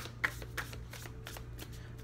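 A deck of tarot cards being shuffled by hand: a run of quick, irregular soft card flicks and taps, the sharpest about a quarter second in.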